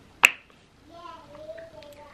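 A single sharp plastic click as the cap of a moisturizer tube is snapped while being handled. It is followed by a faint, wavering hum of a voice.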